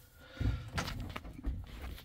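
A few soft, low thumps about half a second apart over faint movement noise.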